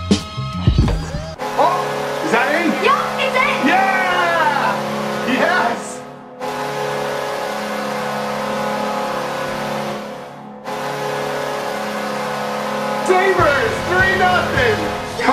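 An NHL arena goal horn, the Buffalo Sabres' horn, blares in long steady blasts with arena crowd cheering and whooping over it. Two short breaks come about halfway through and again a few seconds later. It celebrates a Sabres goal.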